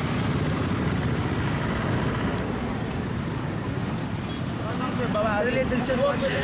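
Steady noise of street traffic, with people's voices coming in near the end.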